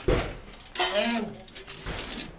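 People talking, with a short sharp knock or clatter at the very start.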